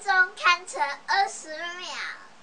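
A young girl's voice in a sing-song, half-singing delivery: a run of short syllables followed by longer held, sliding notes.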